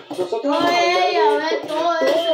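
A child singing a drawn-out phrase, one long note rising and falling in pitch in the middle.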